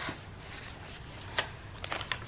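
Soft handling of paper pages and tags in a handmade junk journal, with one sharp tap about midway and a couple of lighter clicks near the end as a page is turned.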